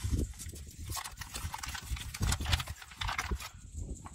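Paper flour packet crinkling and crackling as it is handled and opened, with irregular sharp clicks and taps throughout.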